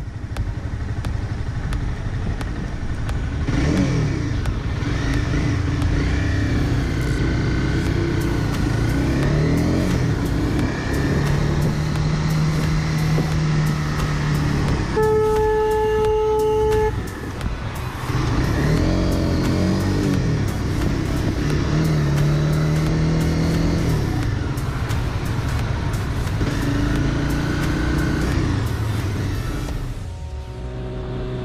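Sport motorcycle's engine accelerating through the gears and cruising in traffic, with steady wind rush. About fifteen seconds in, a horn sounds one steady note for about two seconds as a car closes in alongside.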